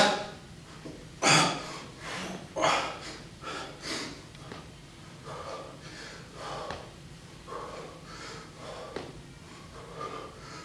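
A man breathing hard from exertion during floor ab exercises, with short forceful exhales about once a second; the first few are the loudest, then they grow fainter.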